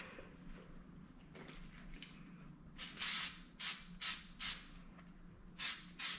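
Angelus mink oil aerosol sprayed onto a suede sneaker in a series of short hisses, starting a little before halfway in, about two or three a second.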